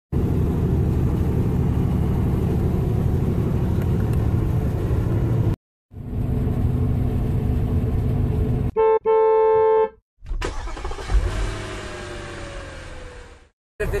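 Steady low rumble of a vehicle on the road, broken by two abrupt cuts. About nine seconds in, a horn sounds two blasts, a short toot and then one held for about a second, followed by quieter traffic noise with a slowly falling tone.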